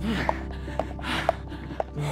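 A man breathing hard in gasping breaths, about one a second, while skipping with a weighted jump rope well into an exhausting set, over background music. Light regular ticks come about twice a second.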